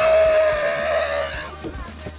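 A loud, high, wavering cry that begins suddenly and trails off after about a second and a half, with background music underneath.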